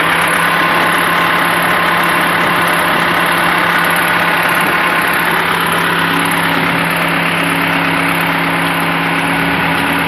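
Engines of a front loader and a forklift running steadily at idle, a loud, even hum. A second, higher hum joins about six seconds in.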